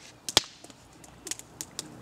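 Wood campfire crackling, with irregular sharp pops and one louder snap about a third of a second in.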